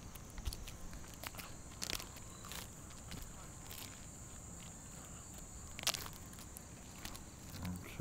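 Footsteps and scuffs on an asphalt-shingle roof: a handful of separate clicks and scrapes, the sharpest about six seconds in, over a steady high insect drone.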